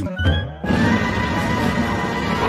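Cartoon music with a short rising run of notes, then about two-thirds of a second in a loud, sustained cartoon lion roar that holds steady.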